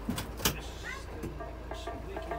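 Dual-mode vehicle idling with a steady low hum as its change from rail to bus mode begins, with a few sharp clicks early on. About a second and a half in, rhythmic music played by local high school students starts up.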